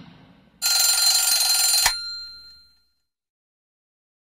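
Bedside alarm clock bell ringing loudly for just over a second, then cut off sharply, its ring fading out.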